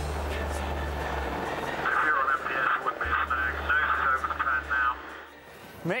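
Apache attack helicopter's rotor and engines running steadily as it hovers in to land, the noise dropping away about five seconds in. A warbling pitched sound rides over it from about two seconds in.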